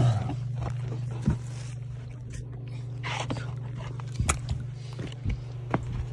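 Footsteps and scattered knocks and clicks of a hand-held phone being carried while walking, over a steady low hum.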